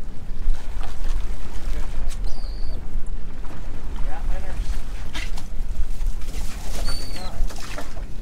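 A cast net being hauled up out of the sea over a boat's side, with water splashing and streaming off the mesh, under a heavy low rumble of wind on the microphone. A seabird gives two short high calls, about two seconds in and again near the end.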